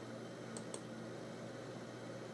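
A computer mouse button clicked once, a quick press and release about half a second in, over a faint steady low hum.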